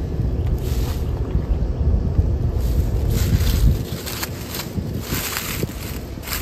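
Dry kudzu leaves crinkling and crackling in short bursts as they are crushed in the hand and pressed into a pile of damp oak leaves, mostly in the second half. Wind buffets the microphone with a low rumble until about four seconds in.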